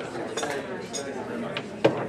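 Dishes and cutlery clinking in a few sharp strikes, the loudest near the end, over a room of people chatting.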